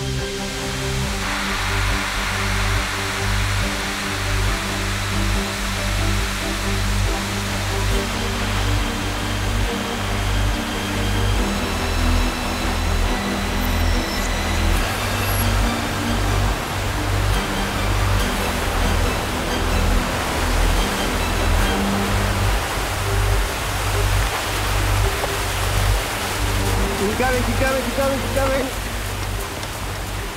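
Water rushing out of a dam's safety relief valve opened a quarter, a steady spraying rush that swells about a second in. Background music with a pulsing low beat plays over it.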